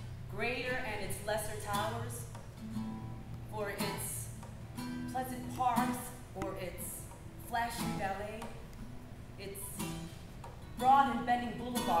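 A woman singing to her own acoustic guitar, the sung line bending and holding notes over plucked and strummed chords.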